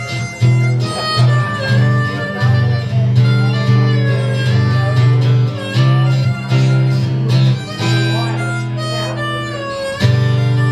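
Harmonica playing a melody in long held notes over a strummed acoustic guitar, an instrumental break in a live song.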